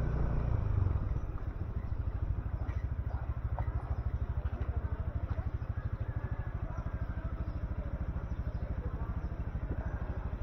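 Small motorcycle engine easing off as the bike slows, then idling with a steady, even pulsing beat from about a second in.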